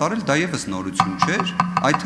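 A man speaking into a desk microphone, with many quick, sharp clicks running through his voice.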